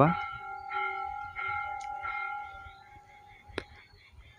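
A temple bell ringing: its metallic tone holds steady, then dies away about three seconds in. A single sharp click comes near the end.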